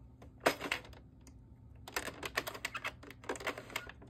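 Light plastic clicking from an Addi 46-needle circular knitting machine as loops are lifted off its needles one at a time during a cast off. There is a single click about half a second in, a quick run of clicks around two seconds in, and a few more just after three seconds.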